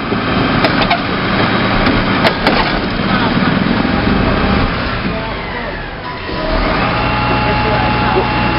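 Rear-loading refuse truck tipping a wheeled bin into its hopper: rubbish crashing and crunching with sharp cracks of splintering wood. About six and a half seconds in, the truck's engine and hydraulics rise into a steady whine.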